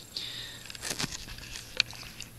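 Faint handling noise from a camera being picked up and turned around: a low hiss with a few light clicks and knocks, the sharpest near the end.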